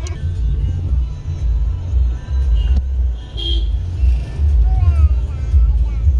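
Car cabin noise while driving: a steady low rumble of engine and road, with faint voices and music in the background.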